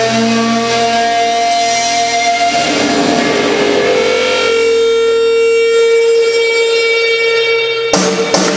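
Live shoegaze band holding a loud, sustained drone of distorted electric guitar notes with no drums; about halfway through a single held note takes over, and a drum hit lands at the very end.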